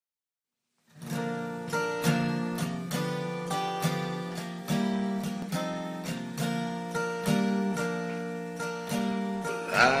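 Acoustic guitar playing the intro of a song in a steady, regular pattern of chords, starting about a second in after silence. A singer's voice comes in right at the end.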